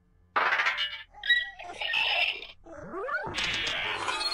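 Audio of a Noggin logo ident, altered with effects: a burst of noisy sound effects followed, about three seconds in, by a cat-like cry that rises and then falls in pitch.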